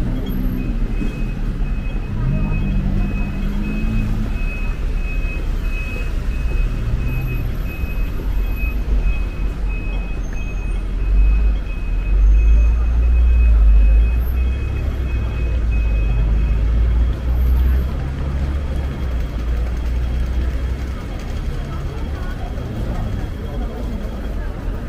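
City street ambience: a steady low traffic rumble that swells in the middle, with passing voices near the start. A high electronic beep repeats steadily through about the first two-thirds, then stops.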